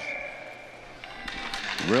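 Ice rink sound under the commentary: a faint steady high tone in the first second, then a quick run of sharp clacks, typical of hockey sticks and puck striking the ice as players set up a faceoff.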